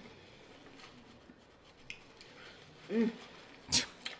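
Faint mouth and eating sounds from a person eating, then a short hummed "mm" about three seconds in, followed by a sharp, brief burst of noise just before the end, the loudest sound here.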